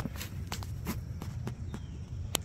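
Footsteps on a concrete driveway, a string of irregular short scuffs and taps, over a steady low rumble.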